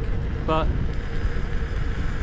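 Wind buffeting the microphone of a camera carried by a rider on an electric unicycle: a steady low rumble, with a faint steady hum under it.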